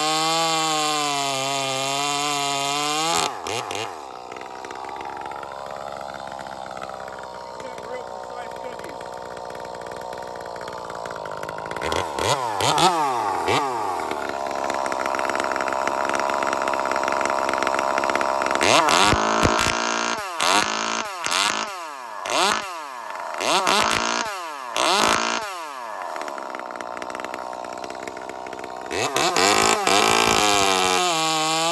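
Ported Echo CS-2511T top-handle chainsaw, a small two-stroke, running a quarter-pitch chain while being broken in. It cuts at full throttle for about three seconds, then drops to a lower steady running note. Later it is revved in a string of short throttle blips about a second apart, each falling back, and comes up to full revs again near the end.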